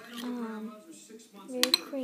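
A spoon clinking against a bowl of yogurt, with a few sharp clinks about one and a half seconds in. A voice hums or murmurs without words over it.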